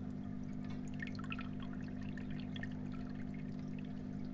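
Water trickling and splashing as it is let through into the filter chamber of an aquarium sump, the level on either side of the filter wool evening out. A steady low hum runs underneath.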